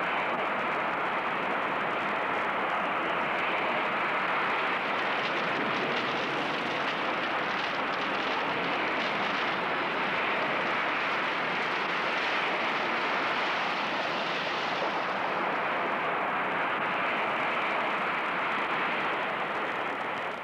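Steady, unbroken rushing noise of a storm, wind and surging floodwater, with no change in pitch.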